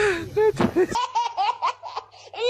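Human laughter: a laugh in the first second, then, after an abrupt change in the sound, a rapid high-pitched giggle of short repeated bursts.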